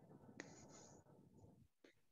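Near silence: faint room noise with one soft click about half a second in.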